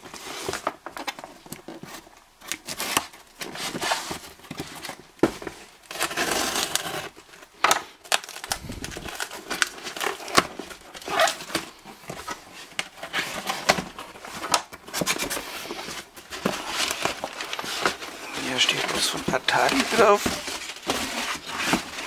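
Small cardboard parcel being cut open with a box cutter and pulled open by hand: irregular scraping, tearing and crinkling of cardboard and packing tape, with sharp clicks as the box is handled.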